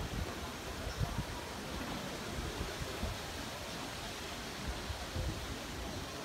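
Steady outdoor hiss of a large open city square, with irregular low rumbles on the microphone.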